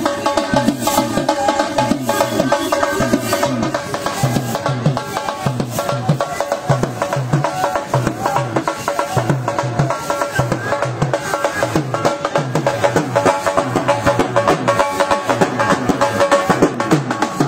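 Dhol drum beating a steady, driving rhythm under continuous music with a melody line.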